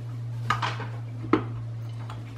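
Two short sharp knocks, a little under a second apart, over a steady low hum.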